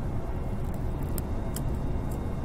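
Jet airliner cabin noise: the steady low rumble of the turbofan engines and airflow, heard from inside the cabin. A few faint high clicks come through near the middle.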